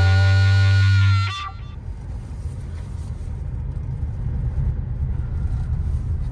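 A loud held music chord ends about a second in. Then comes a car's interior noise: a steady low engine and road rumble as the car drives slowly.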